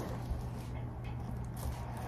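Quiet room tone with a faint steady low hum and no clear event.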